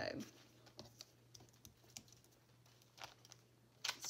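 Faint rustles and light ticks of thick paper journal pages being turned and handled, over a low steady hum.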